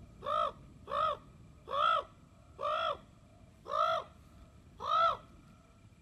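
A large bird calling loudly and repeatedly, six short, arched, harsh calls about a second apart, all alike.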